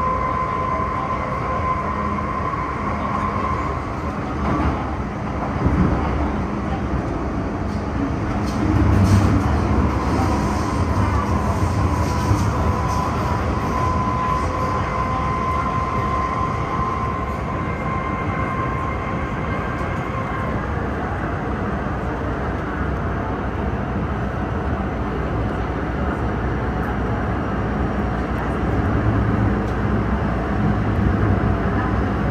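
MTR M-train electric multiple unit running through a tunnel, heard inside the car as a steady rumble of wheels on rail. A thin, steady high squeal rises out of it in the first few seconds and again from about 11 to 20 seconds.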